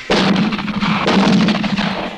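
A rapid volley of many overlapping gunshots, lasting nearly two seconds, over a low steady rumble.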